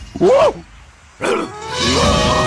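Cartoon larva character's voice: a short, loud cry that rises and falls in pitch, then a second, shorter falling cry about a second later.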